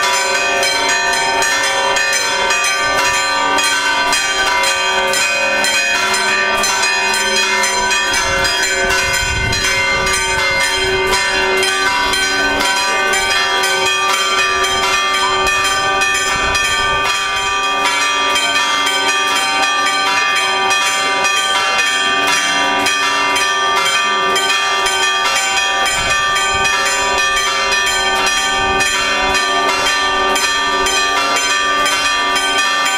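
Church bells pealing continuously, struck in rapid, even succession, with several bell tones ringing on and overlapping.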